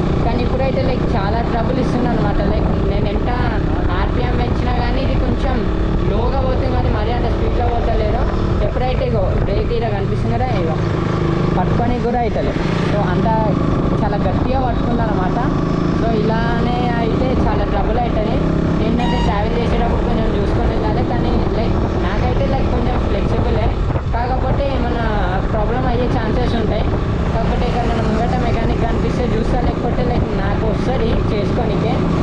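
A voice, wavering in pitch like singing, runs throughout over a steady rush of wind and motorcycle riding noise.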